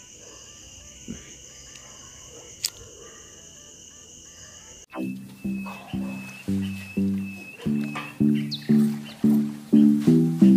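Insects trilling steadily in two high, unbroken tones. About halfway through this cuts off abruptly and background music starts, with a steady beat of pitched notes struck about twice a second.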